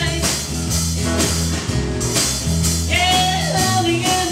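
A live band playing a rock song: a woman singing over acoustic and electric guitars, electric bass and a drum kit, with the voice clearest near the end.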